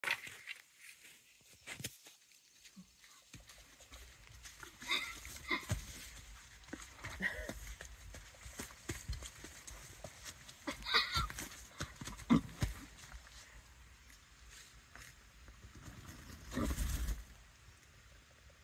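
A foal and a pony moving about on sand: scattered short knocks and thuds, a few brief high-pitched calls, and a short rush of noise near the end.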